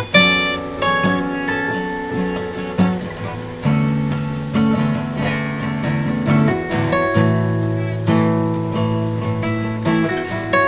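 Acoustic guitar playing a plucked melody over a backing track with held low chords.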